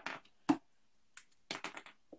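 Short taps and clicks from handling a pen and drawing box on a desk: one sharp tap about half a second in, then a few quieter ones.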